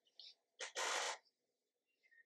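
A short, breathy intake of breath close to the microphone about a second in; otherwise the track is nearly silent.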